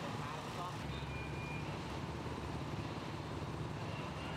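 A steady low engine hum from vehicles with the voices of a crowd mixed in; a deeper engine note joins about a second in.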